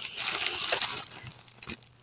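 Crinkling and rustling of a plastic package being handled, with small crackles, dying away near the end.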